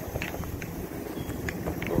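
Footsteps crunching on loose crushed gravel, a few scattered crunches, over a low rumble of wind on the microphone.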